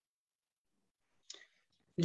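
Near silence for over a second, then a faint short click and a breath just before a voice begins.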